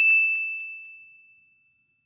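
A single bright bell-like ding, an added editing sound effect: one sharp strike ringing on a single high tone that fades away over about a second and a half, with the rest of the sound cut to silence.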